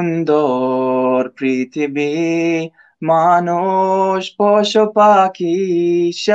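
A man singing the Bangla part of a nasheed unaccompanied, in phrases of long held notes with brief pauses for breath between them. He sings through a throat he calls very dry.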